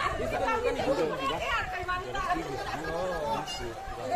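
People's voices talking and chattering.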